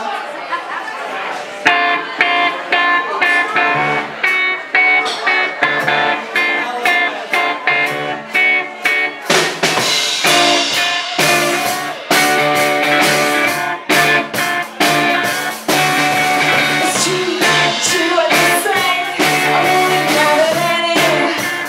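Live rock band opening a song: an electric guitar strums a repeated chord pattern, and about halfway through the drums and bass guitar come in with the full band.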